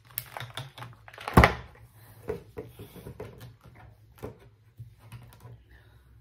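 Clicking and crackling of a thin plastic clamshell tray as a Scentsy wax bar is flipped out of it, with one sharp knock about one and a half seconds in.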